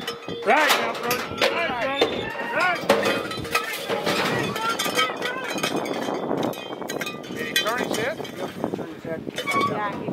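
Voices yelling as a bull bucks out of the chute, with the cowbell on the bull rope clanking.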